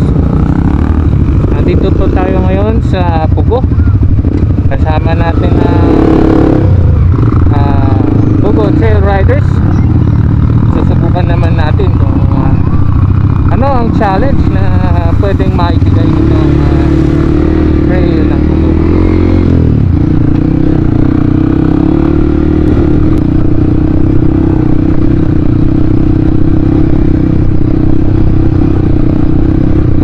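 Yamaha WR155R dirt bike's single-cylinder four-stroke engine running under way on a rough dirt trail, heard close up from the bike. It turns into a steady drone through the second half.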